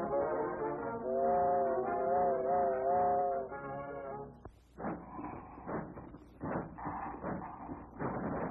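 Old cartoon orchestral score with brass holding a wavering chord for a couple of seconds. About halfway through, the music breaks off into a run of rough, noisy bursts, a cartoon sound effect, heard on a narrow, dull-sounding old soundtrack.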